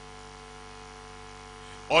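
Steady electrical mains hum, several constant pitches holding level, with no other sound until a man's voice starts again right at the end.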